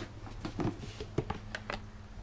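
Clear plastic storage tote being opened: a handful of light plastic clicks and knocks as its latch clips are unsnapped and the lid is lifted.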